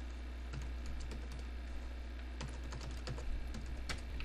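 Computer keyboard typing: scattered, irregular keystrokes as a username and password are entered, with the sharpest click near the end, over a steady low hum.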